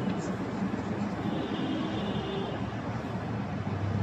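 Steady background hiss and rumble of the room, with a single light tap of chalk on a blackboard near the start.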